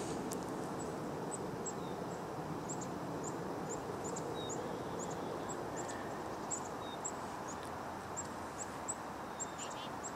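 Small birds chirping, short high chirps about twice a second, over a steady low outdoor background noise.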